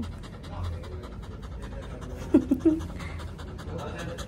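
A dog in a plastic recovery cone panting rapidly and evenly, close up. Two short vocal sounds come a little past the middle.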